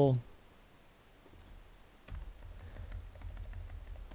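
Typing on a computer keyboard: a quick run of keystrokes starting about halfway through, after a short quiet pause.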